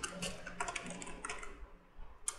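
Typing on a computer keyboard: a quick run of key clicks that thins out near the end.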